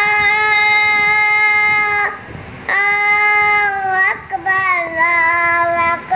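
A young boy's voice reciting the azan, the Islamic call to prayer, in long, steady held notes. He breaks for breath about two seconds in and briefly again around four seconds.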